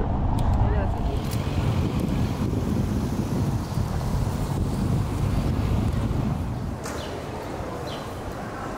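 Wind buffeting the microphone, a rough rumble that eases shortly before the end. A few short, high bird chirps come near the end.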